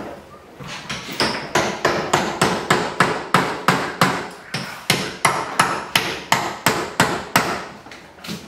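Hammer blows struck in a fast, even rhythm, about three to four a second, each a sharp knock with a short ring.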